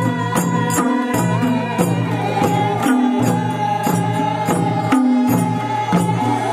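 Traditional folk music: chant-like voices over a repeating low melody, with a steady beat of jingling percussion about three strikes a second.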